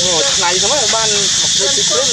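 A high-pitched voice talking in short phrases over a loud, steady high hiss.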